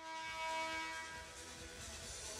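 A single held horn-like tone with even overtones sounds in a basketball arena and fades away over about a second and a half, over the arena's low background noise.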